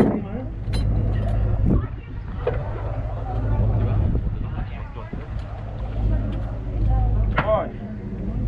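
Steady low rumble of a dive boat's engine running at idle, with people talking and gear clicking on deck.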